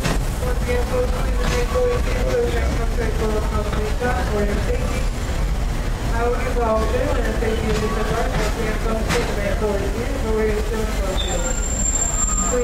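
Steam-train passenger car of the Walt Disney World Railroad rolling slowly into a station: a steady low rumble under the indistinct chatter of passengers.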